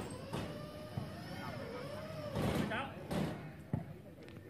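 Men's voices calling out across an outdoor volleyball court, with one sharp smack near the end, a hand striking the volleyball.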